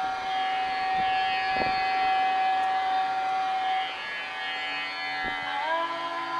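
Indian classical instrumental background music: one long, steady held note for about four seconds, then the melody moves on with short upward glides near the end.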